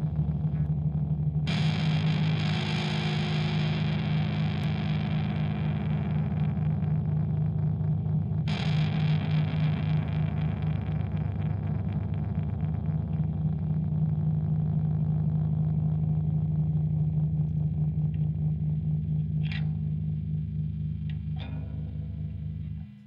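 Dark ambient music: a steady low distorted drone, with washes of noisy texture that swell in twice, about a second and a half in and again about eight seconds in, and slowly die away.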